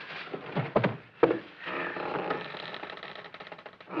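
Sound effect of a remotely operated iron gate moving by itself: several clanks in the first second or so, then a steady running noise.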